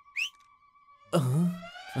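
A short finger whistle that rises sharply in pitch, right at the start. About a second later comes a louder, drawn-out "uh-huh" in a low voice that slides up and down in pitch.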